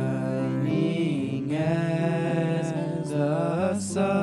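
Live worship song: male voices singing sustained, gliding melody lines into microphones over band accompaniment.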